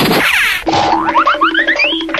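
Cartoon-style comedy sound effect: a quick falling swoop, then a string of short rising boing glides that climb higher and higher over a repeated low note.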